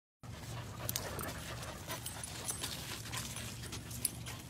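A dog panting close to the microphone, with scattered clicks and scuffs.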